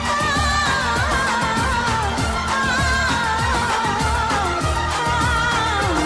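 Hindi Bollywood film song: a singer's melodic line bending up and down over a steady rhythmic beat and instrumental backing.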